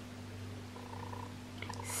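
Quiet steady low hum of room tone, with a soft intake of breath near the end.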